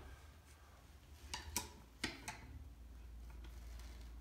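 A few faint clicks and taps as small metal parts and a screwdriver are handled on a reed-gouging machine, about four in quick succession in the middle, over a low steady hum.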